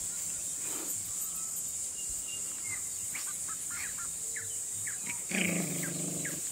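A small puppy whimpering, with a run of short high squeaks in the second half and a louder, lower cry about five seconds in, over a steady high insect drone.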